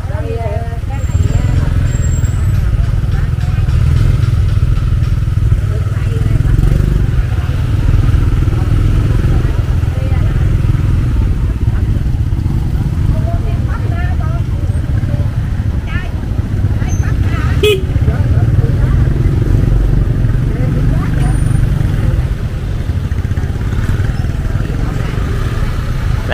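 Small motorbike engine running as it rolls slowly through a busy street market, under a steady low rumble, with other scooters and people's voices around it.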